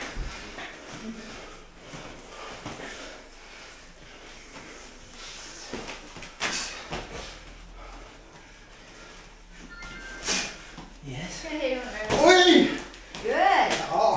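Light Muay Thai sparring in a ring: scattered sharp slaps and thuds from strikes and footwork, a few seconds apart. A man's voice comes in near the end.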